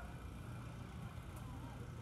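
Steady low outdoor rumble, with faint distant voices.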